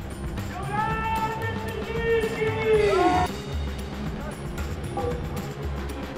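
Music with a repeating bass beat playing over a festival PA. A voice holds one long note from about half a second in and falls away just after three seconds in.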